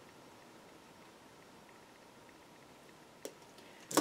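Faint room hiss, then a single sharp snip about three seconds in: wire cutters cutting through the earring's ear-post wire to trim it to length.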